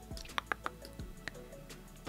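A few soft, sharp clicks at irregular moments over faint, quiet background music.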